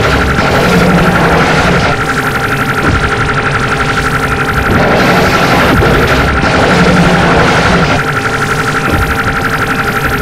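Harsh noise music played from cassette: a loud, dense wall of distortion with a steady high tone through it. Its texture shifts in blocks every couple of seconds, with a fast pulsing flutter in some stretches.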